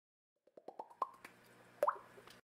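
Intro sound effect: a quick run of short pitched plops climbing in pitch, about eight a second, then a louder plop that glides upward near the end.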